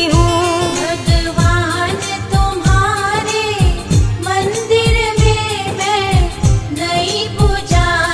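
Hindi devotional song to the goddess Durga (a Navratri bhajan): a voice sings a wavering, ornamented melody over instrumental backing with a regular drum beat of about two to three strokes a second.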